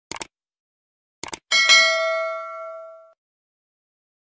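Subscribe-button sound effect: two quick double clicks of a mouse, a second apart, then a bright notification-bell ding that rings for about a second and a half and fades away.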